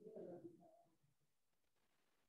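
Near silence, broken only by a faint, brief low-pitched sound in the first half second.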